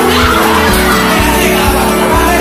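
Background music with a steady beat of about two a second.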